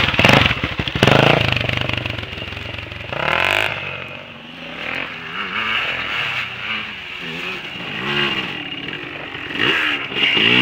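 An off-road motorcycle engine passes close by at high revs about a second in, then dirt bike and quad engines rev up and down further off, rising and falling with the throttle. Near the end an engine comes close and loud again.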